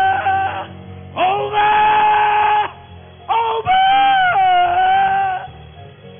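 A man's voice through the church sound system, holding long wordless sung cries, three in a row, the last dipping in pitch partway through, over a steady low keyboard accompaniment.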